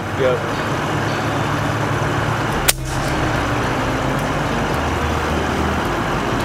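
A single air-rifle shot, one sharp crack about two and a half seconds in, fired as a follow-up shot at an iguana in a tree. A steady low rumble runs underneath.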